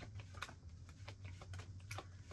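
Tarot cards being shuffled by hand: a quick, irregular run of faint soft clicks as the cards slip against each other, over a steady low hum.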